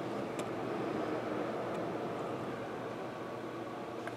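Steady low hiss of room noise, with a faint tick or two from cards being handled.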